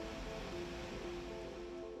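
Quiet background music of sustained held notes, a lower note entering about half a second in.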